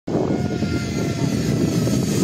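Zip line trolley pulleys running along the steel cable: a steady whirr with a faint high whine.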